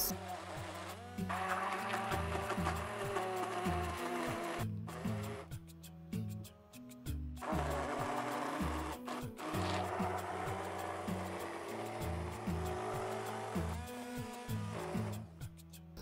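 Electric hand blender whirring in a glass bowl as it chops nuts and oats into banana loaf batter. It stops and starts a few times, with the longest pause of about two seconds about five seconds in. Background music with a bass line plays under it.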